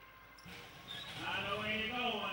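Greyhound starting traps springing open with a sudden bang about half a second in, as the race starts. From about a second in, the race commentator's voice rises over it.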